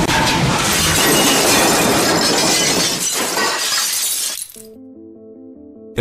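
Glass-shattering sound effect: a loud crash of breaking glass that dies away about four seconds in. Quiet music with soft held notes follows.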